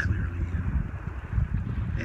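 Wind buffeting the phone's microphone: a steady, dense low rumble.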